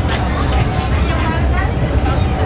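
Passenger ferry underway at speed, a steady low rumble of engines and water, with people's voices in the background.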